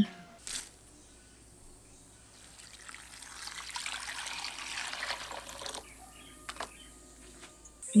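Water poured in a stream into an earthenware bowl of sun-dried bamboo shoots to rehydrate them. It begins about three seconds in and trickles on for about three seconds.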